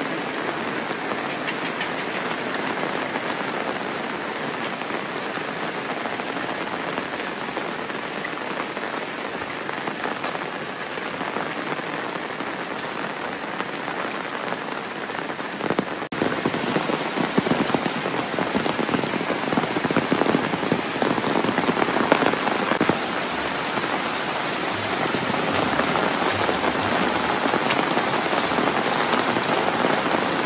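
Steady rain falling on plants, roofs and wet paths. About sixteen seconds in it cuts suddenly to louder rain with more close, distinct drops.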